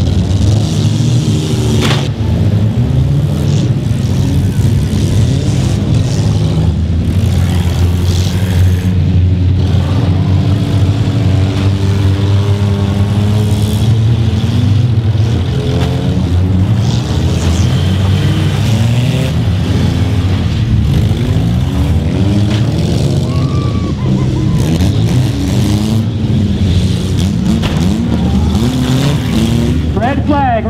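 Several demolition-derby compact cars' engines running and revving over one another, their pitches rising and falling as the cars drive and ram, with a sharp bang about two seconds in.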